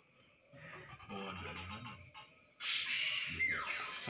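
A faint low human voice about a second in, not clear words, then a sudden loud hissing sound about two and a half seconds in with a short falling whine in it.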